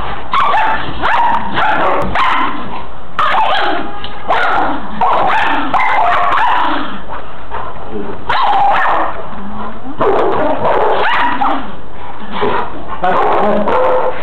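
Dogs barking and yipping as they play-fight, in loud bouts with short breaks between them.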